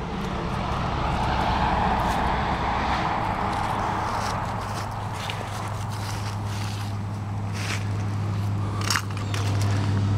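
A 1949 John Deere M's two-cylinder engine idling steadily, with footsteps crunching on gravel over the first few seconds.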